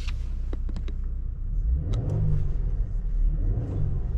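Mercedes GLS450's 3.0-litre twin-turbo V6 running at idle and briefly revved twice, about two seconds in and again near the end. A few light clicks come early.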